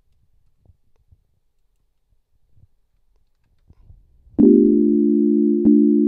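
Ableton Live's Wavetable software synthesizer sounding a sustained low chord of several steady tones. It starts suddenly about four seconds in and is struck again near the end.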